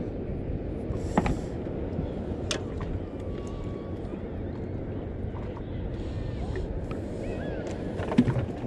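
Steady low rumble of wind and water around a small fishing boat at sea, with a couple of faint sharp clicks in the first few seconds.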